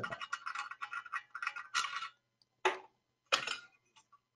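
Aluminium mounting-system parts clinking and clicking as they are handled and fitted together for about two seconds, then two single knocks.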